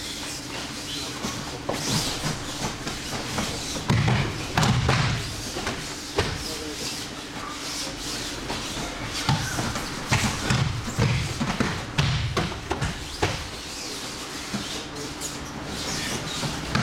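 Aikido throws landing on tatami mats: repeated thuds of bodies hitting the mat at irregular intervals, heaviest about four to five seconds in and again between ten and thirteen seconds, in a large echoing hall.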